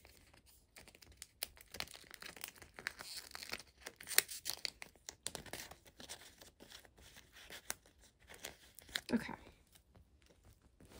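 Clear plastic photocard binder sleeves crinkling and rustling as paper filler cards are handled and slid in and out, with many small sharp clicks and crackles.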